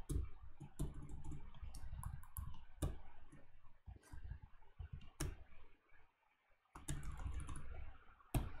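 Computer keyboard keys clicking at an irregular pace, a few presses at a time, with a pause of about a second near the end.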